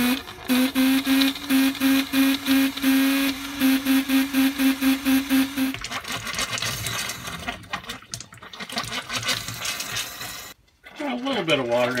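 Compressed air being forced through an RV's cold-water line and out of the kitchen faucet: first a pulsing buzz about three times a second as air and water sputter through, then a steady hissing spray that cuts off near the end.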